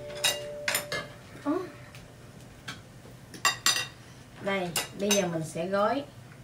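Chopsticks and tableware clinking against plates and bowls at a meal: about six sharp, short clinks spread out, with a person's voice near the end.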